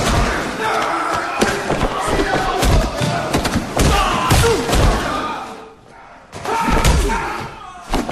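Skit sound effects of a violent scuffle: repeated heavy thuds and slams mixed with raised voices, dropping off briefly near six seconds before the thuds resume.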